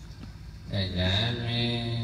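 Buddhist monks chanting Pali verses together into microphones in long, held low notes; after a short pause the chant resumes about two-thirds of a second in.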